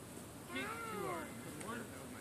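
A child's voice: one drawn-out call that rises and falls in pitch, about half a second in, then a short one near the end.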